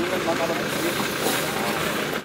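Chatter of many voices mixed with the steady running of a MAN fire truck's diesel engine as the truck rolls slowly forward.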